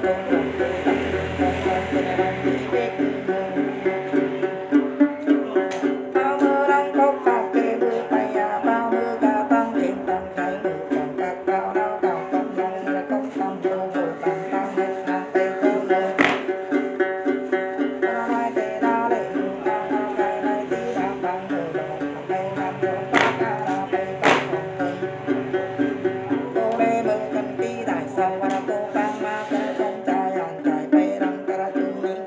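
Đàn tính, the Tày long-necked gourd lute, plucked in a quick, even, repeating pattern. A few sharp clicks cut through it, two of them close together near the end.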